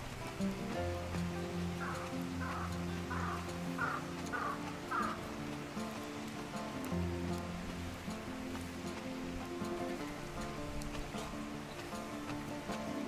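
Background music with steady held notes over a low bass line, and a run of six short, evenly spaced high sounds about two to five seconds in.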